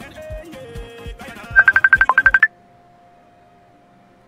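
Background music with a steady low beat, cut into about a second and a half in by a loud electronic phone-ringtone trill of a dozen or so rapid high beeps lasting about a second. This is a livestream alert sound styled as an incoming call. After the trill only a faint steady tone is left.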